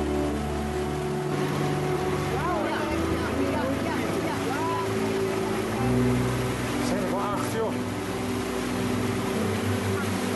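A boat's outboard motor runs steadily, with water rushing past. A few short rising-and-falling whistle-like tones come about three seconds in and again near seven seconds.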